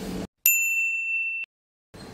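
A single high-pitched electronic beep, one steady tone held for about a second, starting and cutting off sharply.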